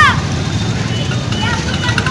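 An amplified man's voice trails off on a falling syllable, then a pause filled by a steady low rumble of background noise with faint voices in it.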